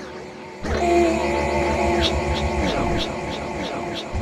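Electronic grime beat built from Launchpad app sound-pack loops. A fuller section drops in about two-thirds of a second in, with pulsing bass and held synth notes, then falling pitch sweeps near the middle while a steady hi-hat tick carries on.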